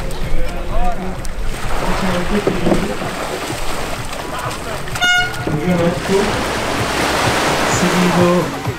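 A single short horn toot about five seconds in, over a continuous wash of shallow surf and splashing with background voices.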